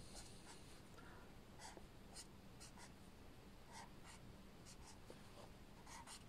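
Pen drawing on squared notebook paper: faint, short scratching strokes at an irregular pace as small diamond shapes are sketched.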